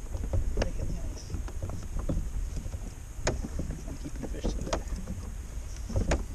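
Scattered knocks and clatter of gear being handled aboard a plastic fishing kayak, the sharpest a little past the middle, over a low rumble of wind on the microphone.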